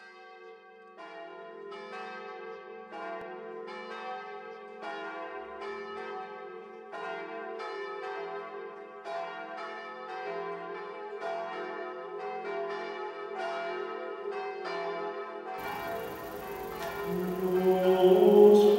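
Church bells ringing, about one strike a second, fading in at the start, their low tones held between strikes. Near the end a hiss comes up and chanting voices begin.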